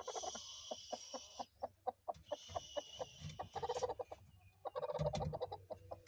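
A broody hen clucking in a quick run of short notes, with louder drawn-out calls about three and a half and five seconds in, as she is fussed off her nest of eggs and gets upset at being disturbed.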